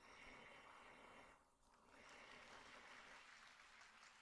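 Near silence: only a faint, even hiss, dipping briefly about one and a half seconds in.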